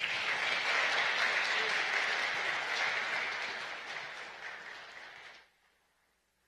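Audience applauding, starting at once, slowly thinning, then cut off abruptly about five seconds in.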